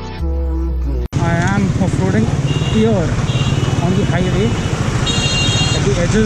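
Background music for about the first second, then it cuts to road traffic: motorcycle engines running in a slow jam, with vehicle horns honking several times.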